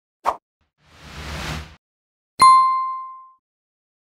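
Animated end-card sound effects: a short plop, then a whoosh, then a single bright ding that rings out and fades over about a second.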